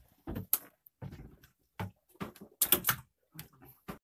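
A string of irregular knocks and slaps on a wooden boat floor, loudest in a quick cluster a little before three seconds in.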